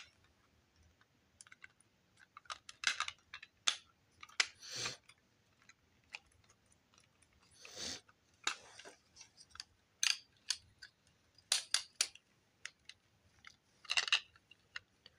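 Plastic building bricks clicking and clacking as a round grey brick assembly is handled and pressed together, in irregular sharp clicks spread across the whole time.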